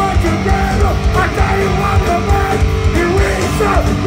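A heavy metal band playing live at full volume: distorted electric guitars holding and bending notes over pounding bass and drums, recorded from within the crowd.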